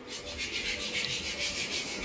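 Scratchy rubbing and scuffing noise on the microphone of a handheld camera being carried while walking, in quick short strokes.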